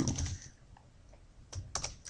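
Computer keyboard keystrokes: a few faint scattered taps, then a quick cluster of key presses about a second and a half in, as a line of code is finished and entered with Shift+Enter.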